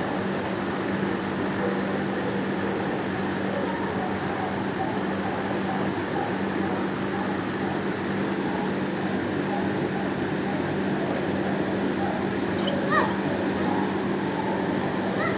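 Animal-shelter kennel ambience: a steady hum under a constant background din of other dogs. Near the end comes a brief high-pitched whine, then a short rising dog whimper.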